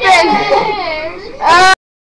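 A young person's high-pitched voice making drawn-out, wavering, crying-like sounds without words: one long cry, then a shorter one near the end that is cut off abruptly.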